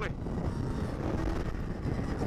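Polaris SKS 700 snowmobile's two-stroke engine running steadily as the sled travels along at an even speed.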